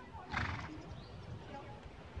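A grey Irish Sport Horse cross Irish Draught trots on an arena surface. About half a second in, the horse gives one short, breathy blow, the loudest sound here.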